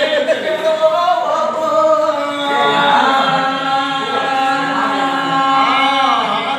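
A man singing a Telugu golla chaduvu folk narrative song unaccompanied, drawing out long held notes.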